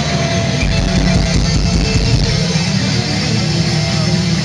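Heavy metal band playing live at full volume: distorted electric guitars over bass and drums, heard from inside the crowd. A deep bass swell comes in about half a second in and lasts roughly two seconds.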